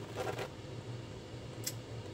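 Faint handling of a cardboard case of protein shakes, with one small sharp click about one and a half seconds in, over a low steady hum.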